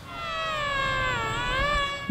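Small electric motor and propeller of a mini foam RC airplane in flight, giving a steady high whine whose pitch dips a little past the middle and rises again near the end as the throttle or speed changes.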